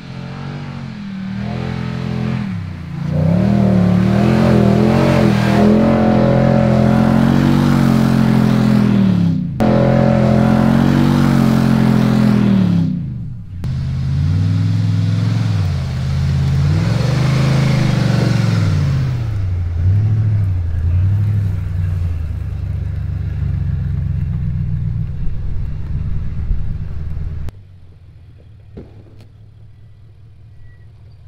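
Nissan Y62 Patrol's V8 engine revving hard under load in soft sand, breathing through a 5-inch stainless snorkel; its pitch climbs and falls in repeated surges. The engine sound drops away abruptly a couple of seconds before the end.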